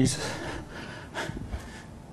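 A man's sharp breath drawn just after speaking, followed a little over a second later by a faint short tap, over quiet lecture-hall room tone.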